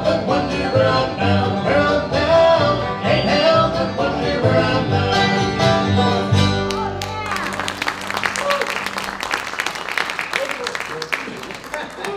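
Acoustic bluegrass band of banjo, guitar, mandolin, dobro and upright bass playing the closing instrumental bars of a song, which end about seven seconds in. Audience applause follows and slowly fades.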